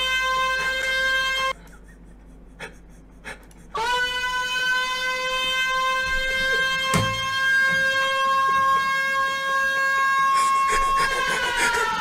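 A meme siren sound played back from a video: a loud, steady siren tone that cuts off about a second and a half in. After two seconds of near quiet it comes back with a quick rise in pitch and holds steady. Near the end it starts to fall in pitch.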